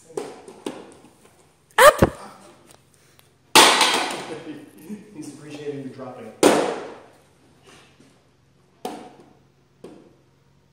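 Voices, with an adult saying "up" about six seconds in, and several sharp knocks of a light 1 kg plastic toy barbell on a plywood lifting platform. The loudest knocks come about two seconds in and again a little after three and a half seconds.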